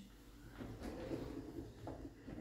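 Faint rustling and light handling noises of a kitchen drawer being opened and its contents (packets, foil and baking-paper rolls) moved about by hand.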